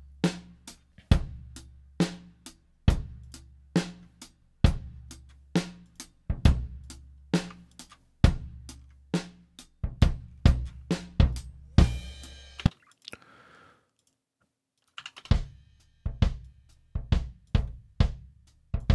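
A live-recorded acoustic drum kit played back on its own, a kick drum and two overhead mics: a slow, steady beat with a kick hit about once a second and snare and hi-hat strikes between. Playback stops for about a second, roughly three-quarters through, then starts again.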